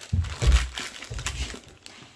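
A thin clear plastic parts bag crinkling as fingers handle it, with a few dull low thumps of hands against the cardboard calendar.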